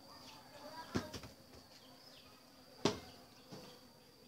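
A steady high-pitched insect drone, broken by two sharp knocks, one about a second in and one near the end, with a fainter knock just after it.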